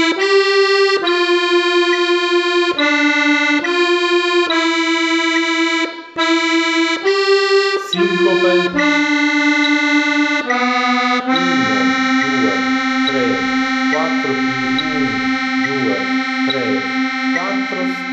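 Piano accordion playing a slow single-line melody on the right-hand keyboard, one sustained note at a time, then holding one long low note for about the last seven seconds.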